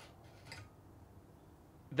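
Near silence: quiet room tone, with one faint, soft sound about half a second in.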